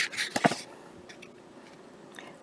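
Page of a paper picture book being turned by hand: a sharp flick and a few quick paper rustles in the first half second, then quiet room tone.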